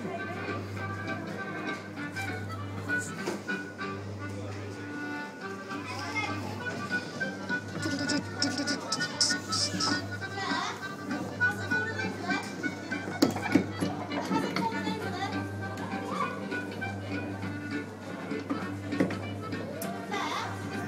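Coin-operated pirate-ship kiddie ride playing its music, with a steady low hum under it and children's voices over it.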